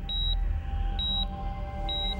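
Patient monitor beeping: three short, high beeps about a second apart, over a low steady drone.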